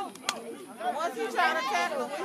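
Several spectators' voices overlapping, chattering and calling out, louder in the second half.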